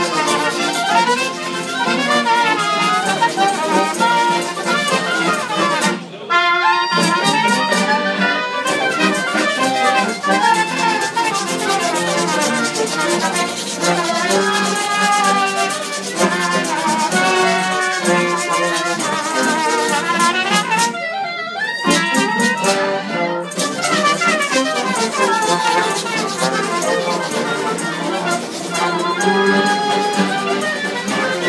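Live instrumental carnival band music: a trombone and a trumpet play the tune together over accordion and strummed acoustic guitars, with no singing. This is a Terceira-style (Azorean) carnival bailinho.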